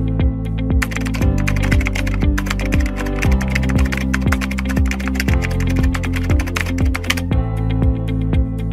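Rapid keyboard typing clicks start about a second in and stop near the end, laid over electronic background music with a steady beat.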